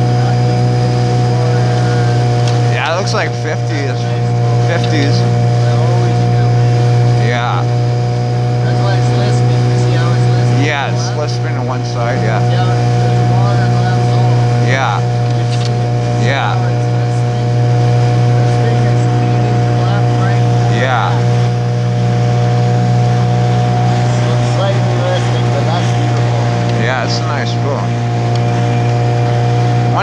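Small boat's outboard motor running steadily underway, a constant low drone with a steady hum above it. Short, brief sounds come over it every few seconds.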